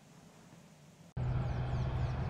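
Near silence for about a second, then a steady engine hum cuts in suddenly: army armoured vehicles running.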